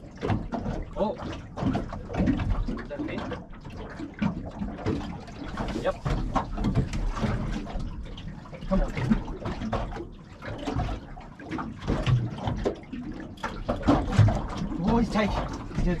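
Small waves lapping and slapping irregularly against a small boat's hull, with wind rumbling on the microphone.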